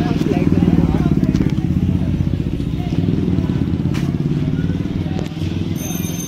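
A motorcycle engine running close by with a fast, even pulse. It is loudest about a second in and then slowly fades.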